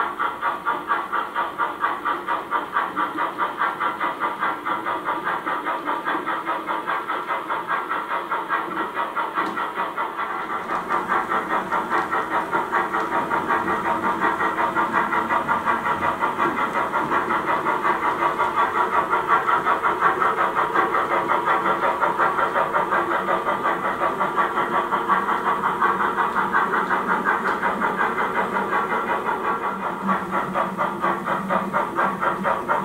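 Steam-locomotive chuffing from an H0 model steam locomotive as it pulls its train: a steady beat of about three chuffs a second with hiss, a little louder after about ten seconds.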